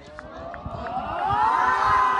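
A team of boys cheering together: many voices join in one rising shout that climbs in pitch and loudness to its peak near the end.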